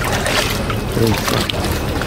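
Water splashing and sloshing as a large catfish is hauled out of shallow muddy water, with a steady low engine hum underneath. A man's voice is heard briefly about a second in.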